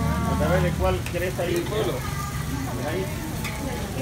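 Pupusas sizzling on a flat griddle, with a few faint scrapes and clicks of a metal spatula, under voices talking.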